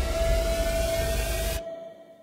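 Sound design from a promotional soundtrack: one steady high tone over a swelling hiss and low rumble. The hiss and rumble cut off abruptly about one and a half seconds in, and the tone fades out after.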